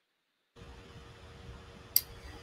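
Dead digital silence, then about half a second in a microphone's background noise cuts in: a low hum with a faint steady tone and hiss, with one short sharp click near the end.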